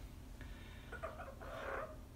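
Green Amazon parrot making a few faint, short vocal sounds.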